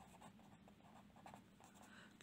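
Faint scratching of a felt-tip marker writing on paper in a few short strokes.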